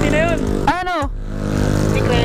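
Two short, loud voice calls in the first second over a motorcycle engine idling steadily.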